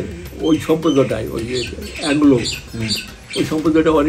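An old man speaking Bengali, with birds calling faintly in the background.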